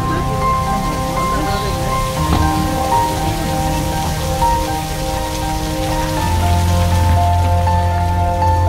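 Steady patter of falling water, like rain, under slow background music with long held chords that change about six seconds in, when a deep bass note enters.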